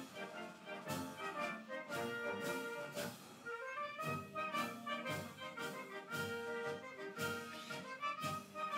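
Processional music from a band with brass playing a stately piece with a steady beat about twice a second.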